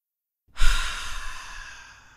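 A long breathy exhale, a sigh close to the microphone, starting about half a second in with a puff on the mic and fading away over about two seconds.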